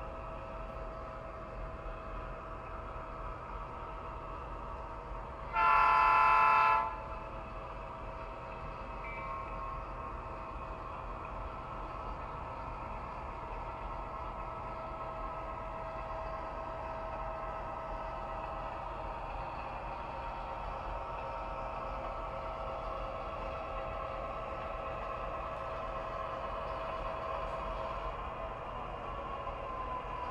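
Sound-equipped HO scale model diesel locomotives running, their onboard speaker giving a steady diesel engine drone, with one loud horn blast of about a second some six seconds in. The drone grows a little louder toward the end as the locomotives approach.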